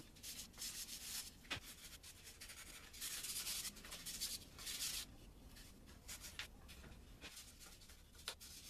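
A hand-held pad rubbed over a small finished wooden board in short scraping strokes, with a few light wooden knocks as pieces are handled and set down.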